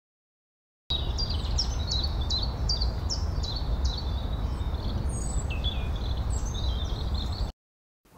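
Outdoor park ambience: small birds chirping in a quick series of short falling notes, then scattered calls, over a steady low background rumble. It starts about a second in and cuts off shortly before the end.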